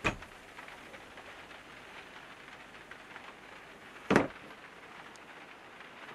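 A caravan's wooden wardrobe door being handled: a click as it is opened, then a single sharp knock about four seconds in, over a low steady hiss.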